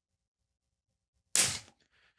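15-pound fluorocarbon leader snapping at a seven-turn uni knot under a steady pull to breaking strength: a single sharp snap about a second and a third in, dying away quickly.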